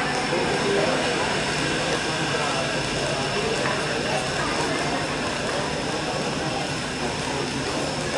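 Steady hubbub of many indistinct voices from the stadium crowd, with no single clear speaker, over a faint steady high tone.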